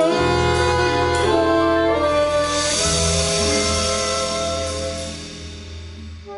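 Small jazz band with saxophones and trumpet comes in together on long held chords that shift twice in the first two seconds, then slowly fades over the last few seconds.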